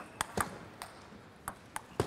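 Table tennis rally: the plastic ball knocking off the table and the players' bats, about seven sharp clicks in quick, uneven succession.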